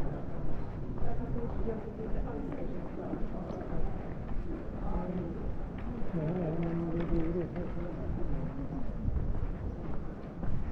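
Street ambience on a busy pedestrian street: several people nearby talking indistinctly, with one voice louder for about a second and a half past the middle, over footsteps.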